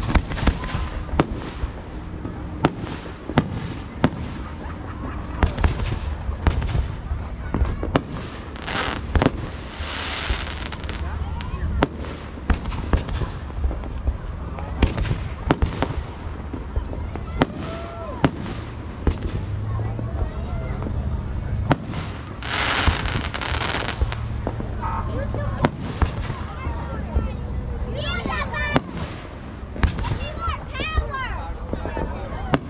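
Aerial firework shells launching and bursting in a rapid, irregular series of sharp bangs. A couple of longer hissing stretches come around ten seconds in and again past twenty seconds.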